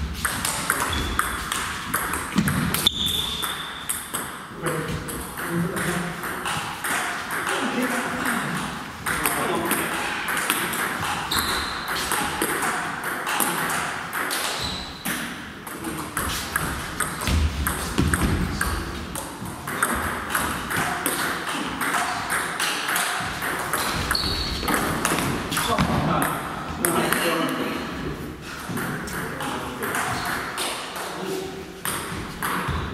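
Table tennis rallies: the ball clicks sharply off the bats and the table in quick repeated strikes, pausing between points.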